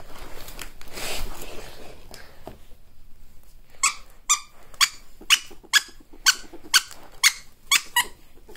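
Faint rustling, then from about four seconds in a run of about nine short, high squeaks, evenly spaced about two a second, during play with a ferret.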